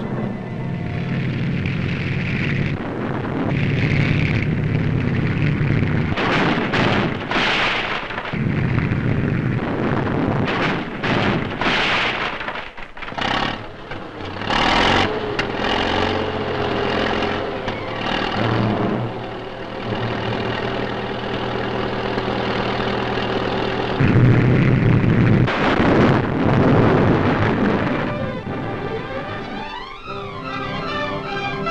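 A tank's engine running as it rams and climbs over a barricade of heavy logs, with a run of sharp cracks and thuds from about six to fifteen seconds in. Music plays along with it.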